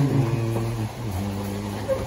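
A man's voice holding a low, steady hum in two long stretches, with a short break about a second in.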